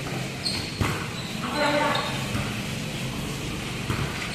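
A volleyball being struck during a rally: a sharp slap about a second in and another near the end, with voices of players and onlookers around it.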